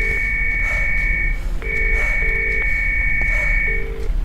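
Telephone ringing tone in the British double-ring pattern, two short buzzes then a pause, repeating. This is what a caller hears while a call connects. A steady high two-note tone sounds over it in two stretches of about two seconds each.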